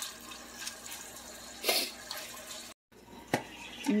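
Shrimp heating in a pan of butter and garlic, a steady sizzling hiss, with a louder scraping swell partway through as they are stirred and a sharp utensil tap on the pan shortly before the end.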